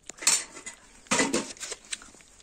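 Steel plates and pots clattering and scraping against each other: one scrape near the start, a louder, longer one just after the middle, then a couple of light clinks near the end.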